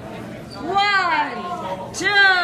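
A person's high, drawn-out wordless vocal cry, its pitch rising and then falling over about a second, starting just before the middle.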